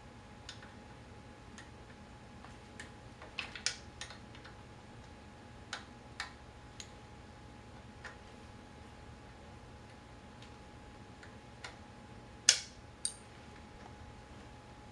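Scattered metal clicks and taps of a wrench on a wheelchair wheel-lock mounting bolt as it is snugged up, irregularly spaced, with the two loudest clicks near the end.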